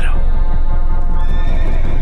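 A horse neighing over background music.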